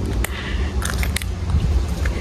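Steady low rumble of wind buffeting the phone's microphone while walking, with a few light clicks and scuffs, a couple of them close together around a second in.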